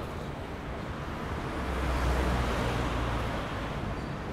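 City street traffic noise, a steady rush of cars that swells to its loudest about two seconds in as a vehicle passes, then eases off.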